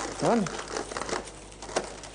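Food packaging crinkling and rustling at a meal table, with small clicks, and a short voiced syllable near the start.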